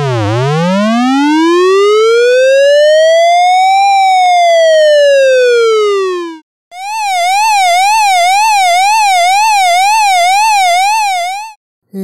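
Electronic ambulance siren sound effect: a slow wail that rises for about four seconds, then falls and cuts off, followed after a short break by a fast warble going up and down about two and a half times a second for about five seconds.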